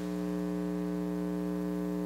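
Steady electrical mains hum, a constant buzzing drone with no change in pitch.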